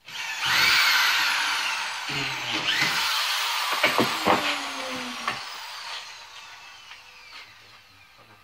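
An electric power tool motor starting abruptly and revving up with a high whine, revving again about two and a half seconds in, then slowly winding down and fading over several seconds. A few sharp knocks sound about four seconds in.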